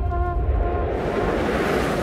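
Background music trails off in the first second. A rushing whoosh of noise then swells, much like surf or wind, and cuts off suddenly at the end.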